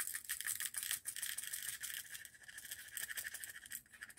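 Small rhinestone drills clicking and rattling as they are tipped from the fingers into a plastic storage container, many light clicks that thin out toward the end.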